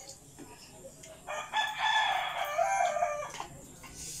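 A rooster crowing once: a single unbroken call of about two seconds, starting about a second in.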